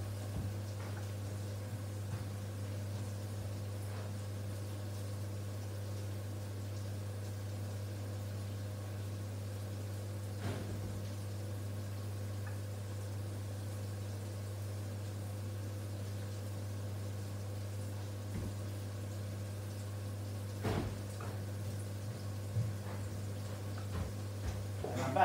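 Steady low electrical hum of a running electric oven, with a few faint knocks and clatters about four, ten and twenty-one seconds in.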